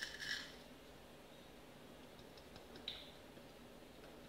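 Quiet handling sounds: a short soft clatter as small silicone cups are set on a digital kitchen scale, then a few faint ticks and a small click.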